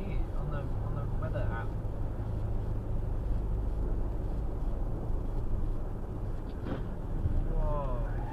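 Steady road and engine noise heard inside a moving car's cabin at motorway speed, with faint voices in the first second or two and again near the end.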